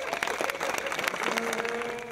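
A crowd applauding, a dense patter of hand claps. Over the second half a steady horn note sounds, from a plastic stadium horn in the crowd.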